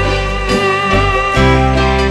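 Instrumental passage of a Burmese pop song played by a band: electric keyboard with sustained notes over a bass line, no singing.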